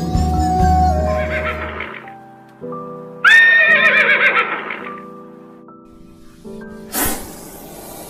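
A horse whinnying once, a loud wavering call of about a second, starting about three seconds in over background music. Near the end comes a short hissing burst.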